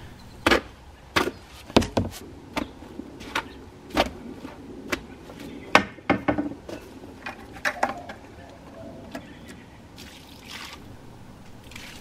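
Mortar hoe chopping and dragging through damp sand-and-Portland-cement dry pack in a plastic mixing tub: a run of sharp scraping knocks, about one a second, that thin out over the last few seconds.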